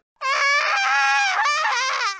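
A cartoon character's high-pitched wailing cry: one long, wavering, nasal call lasting nearly two seconds.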